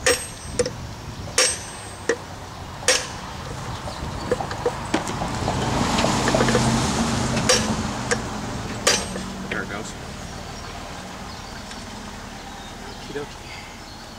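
A hammer striking the castle nut on the end of a Maytag 92 engine's crankshaft, about five firm metallic taps and several lighter ones, to shock the flywheel loose from its tapered shaft while the flywheel is lifted by its rim. A rushing noise swells and fades in the middle.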